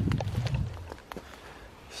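Low rumbling handling noise and steps in grass as a handheld camera is carried around, dying down about a second in to a few faint clicks.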